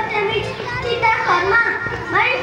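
Children's voices: a child talking, with other children chattering.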